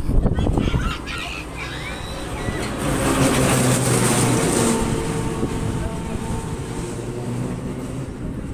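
Steady low hum of a 1958 Eli Bridge Ferris wheel's drive machinery. It swells and takes on a hissing rush for a couple of seconds around the middle, as the car passes the bottom of the wheel, then eases off again.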